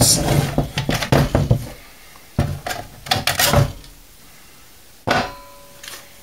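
Sheet-steel cover of a PC power supply being worked loose and lifted off the chassis: a run of metal clicks and rattles, a second cluster about halfway through, then one sharp clank near the end that rings briefly.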